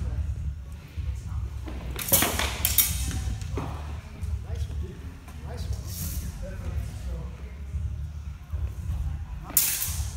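Steel-weapon sparring with sidesword and shield against rapier and dagger: a handful of sharp clashes and impacts from blades, shield and footwork on the wooden floor, about two seconds in, near three, around six and loudest near the end. A steady low hum runs underneath.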